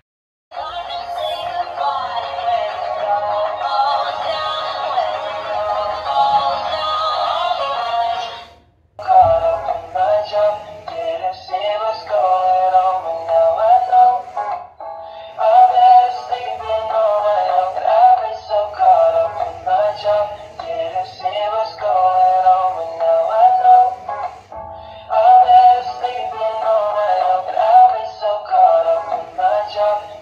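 Dancing cactus plush toy playing a song with singing through its small built-in speaker, thin-sounding with little bass. The song starts about half a second in and breaks off briefly near nine seconds before carrying on.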